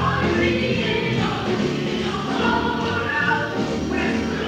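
A group of voices singing a 12-bar blues song over instrumental accompaniment.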